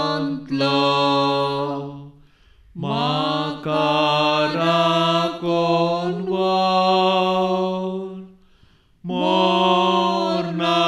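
A solo voice chanting a slow devotional melody in long held notes, without instruments. It sings three phrases, with short pauses about two seconds in and near the end.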